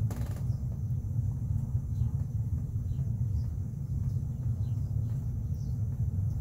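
A steady low rumble with no clear source, rising and falling slightly in loudness, with a few faint ticks over it.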